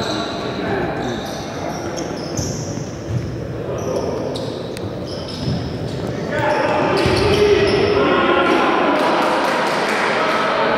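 Futsal game in a reverberant sports hall: indistinct shouts and calls from players and bench, with a few ball kicks and thuds on the hard court. The voices grow louder and busier about six seconds in.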